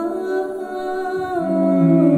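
A woman's voice singing a slow wordless melody in long held notes that step from one pitch to the next, with a lower sustained string note coming in about halfway through.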